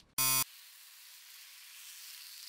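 A short, loud electronic buzz lasting about a third of a second, followed by a steady thin hiss.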